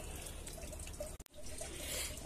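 Faint steady trickle and drip of running water, dipping out briefly a little after a second in.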